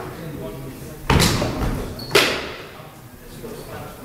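Two sharp knocks about a second apart as two backsword fencers close and exchange, echoing in a large hall.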